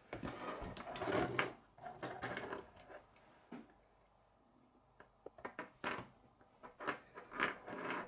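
Plastic K'nex rods and connectors clicking, knocking and rubbing as the model is handled and shifted about on a wooden tabletop, in bursts with a short lull about halfway through.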